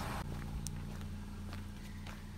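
Footsteps on grass and pavement over a steady low hum, with a light click about two-thirds of a second in.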